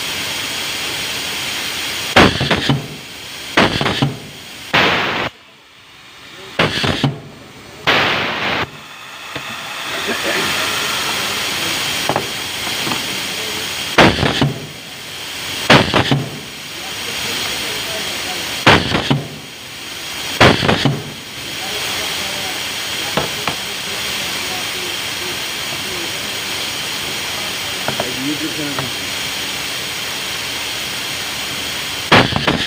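Pneumatic cable insulation cutting machine cycling: about ten sharp bursts as its air cylinders clamp and cut, each with a short hiss of compressed air, several in quick pairs, over a steady hiss. The bursts stop after about twenty seconds.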